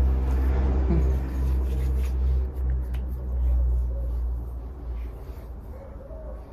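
Low, steady engine rumble of a vehicle outside, loud for about four seconds and then fading away.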